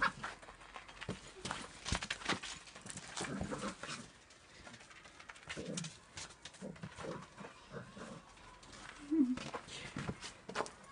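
A Samoyed playing with a football on snowy ground: scattered crunches and knocks from paws and ball, with a few short low vocal sounds.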